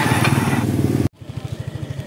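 A small motorcycle engine running loudly as it passes close by. About a second in, the sound cuts off abruptly to another motorcycle engine idling with a quick, even putter.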